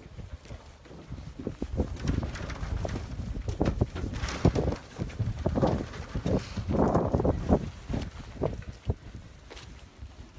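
Footsteps on a marina gangway, as irregular knocks, over wind rumbling on the microphone, which grows noisier for a few seconds in the middle.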